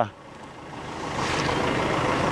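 Outdoor background noise from a field recording: a steady rushing hiss with no clear voices, growing gradually louder.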